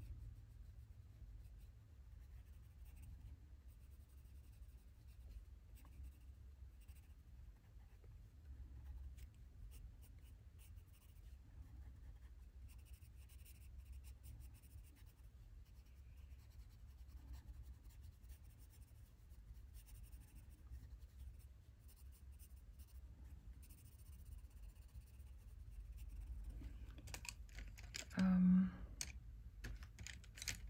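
Soft-core coloured pencil (Prismacolor Premier, burnt ochre) scratching faintly on paper in short shading strokes, over a low steady hum. One brief louder sound comes near the end.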